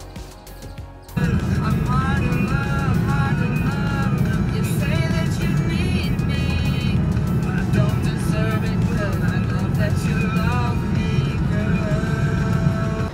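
Soft music at first, then about a second in a sudden jump to steady road and engine rumble inside a moving car. A song with singing plays over the rumble.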